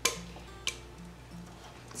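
Seasoned cauliflower florets scraped out of a glass bowl with a silicone spatula into a wire air fryer basket, giving a sharp tap at the start and a fainter one a little under a second later. Soft background music with low held notes runs underneath.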